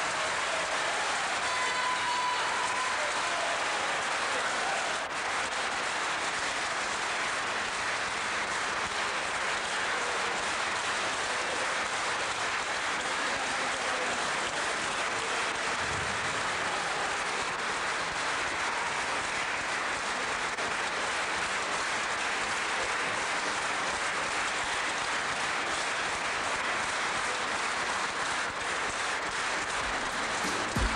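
Large concert audience applauding steadily.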